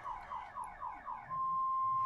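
An electronic alarm siren: a quick run of falling chirps, about five a second, then switching to a steady high beep held through the end.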